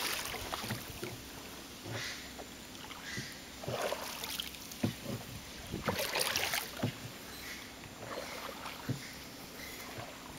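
Water splashing and sloshing against a small wooden boat, with a few short irregular knocks on the wooden hull spread through.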